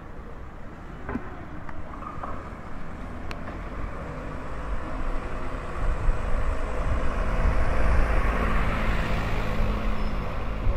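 Street ambience with a motor vehicle passing close by: a rumbling road noise that builds over the second half and is loudest near the end.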